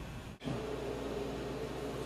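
Steady background hiss and low hum of room tone, broken by a brief dropout less than half a second in.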